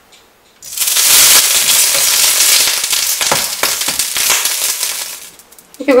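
Water sizzling as it is spread over a hot, oiled nonstick frying pan. It starts with a burst about half a second in, runs on as a loud, even hiss with scattered crackles, and fades out near the end.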